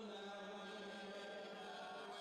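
Church congregation singing a hymn a cappella, led by a song leader on a microphone, with no instruments. They hold one long note.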